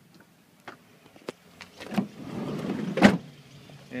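A few soft clicks, then about a second of rising rustle and handling noise with a faint low hum, ending in a single loud thump about three seconds in.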